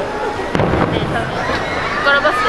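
A single firework bang about half a second in, booming and echoing briefly over the chatter of a crowd.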